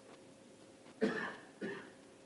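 A person coughing twice in quick succession, about a second in, in a room.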